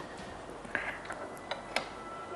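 A few light, scattered clicks over quiet room tone, about four in all from just under a second in.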